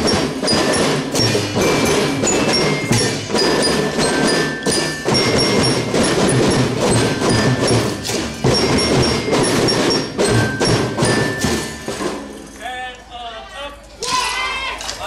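Children's drum band playing: snare and bass drums beating under a bell-like melody. The music stops about twelve seconds in, and children's voices follow.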